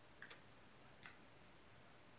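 Near silence: quiet room tone with two faint clicks, a small double one near the start and a sharper one about a second in.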